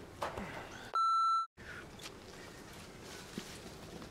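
A single steady electronic beep, high and about half a second long, about a second in. All other sound drops out while it plays, so it is an edited-in bleep over the soundtrack, typical of a censor bleep over a word. Around it is only faint outdoor background.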